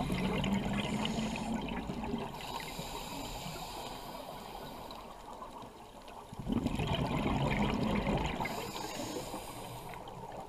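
Scuba regulator breathing underwater: two long, bubbling exhalations, one at the start and another about six and a half seconds in, with a quieter stretch between.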